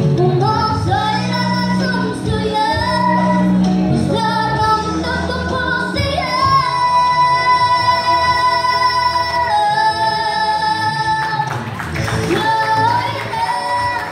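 A woman singing into a handheld microphone, with long held notes from about six to eleven seconds in.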